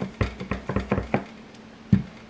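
Clear acrylic stamp block tapped repeatedly on an ink pad to ink the stamp: a quick run of about eight light knocks over the first second or so, then one more knock near the end.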